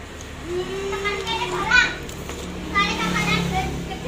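Children's voices, talking and calling out, with one long drawn-out call in the first two seconds.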